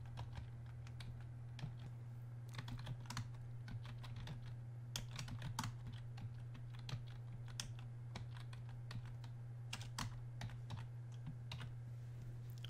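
Computer keyboard typing: scattered keystrokes in short, irregular runs over a steady low hum.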